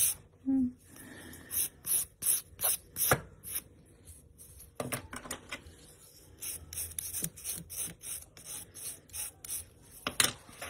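Hand nail file rasping in short repeated strokes across long hard gel nails on a training hand, then a nail dust brush swept over them in quick strokes, about three a second.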